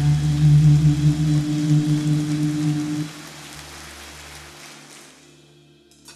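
A large congregation applauding over held low notes of background music. The applause is strong for about three seconds, then dies away while the music fades.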